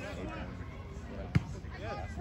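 A soccer ball struck once: a single sharp thump a little past a second in, heard over distant voices on the field.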